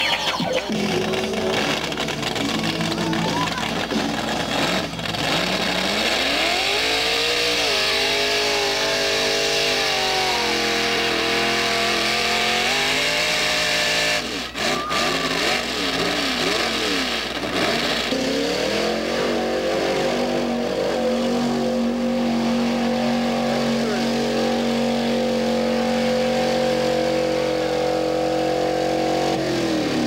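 Engine of a mud-bogging off-road vehicle revving hard in a mud pit: the revs climb about six seconds in and are held high, fall back and waver around the middle, then climb again and hold high to the end.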